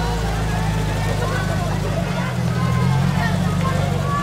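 Steady low engine rumble of an open-topped UAZ jeep driving at walking pace, with voices faintly in the background.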